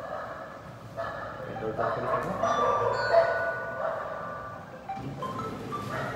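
Indistinct voices with music underneath, no clear words.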